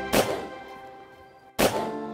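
Two shotgun shots about a second and a half apart, over background music.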